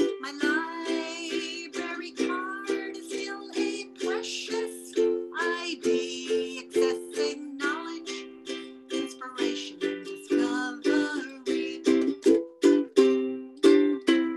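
Ukulele strummed in steady chords, about three strokes a second, with a woman singing the melody over it through the last round of a song.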